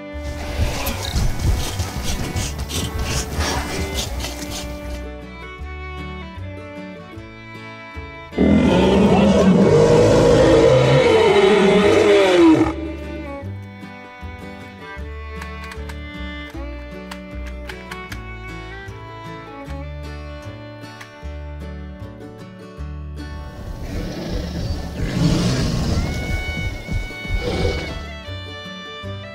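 Background music with dinosaur roar sound effects laid over it; the loudest roar lasts about four seconds, starting about eight seconds in, and falls in pitch toward its end.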